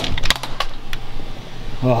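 Sharp knocks and clicks in quick succession in the first half second: a closet door being pushed open and a Nerf blaster firing a dart into the closet.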